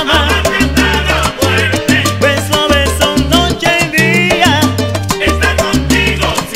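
Salsa orchestra recording playing: a bass line changing note every half second or so, dense percussion strokes, and melodic lines above.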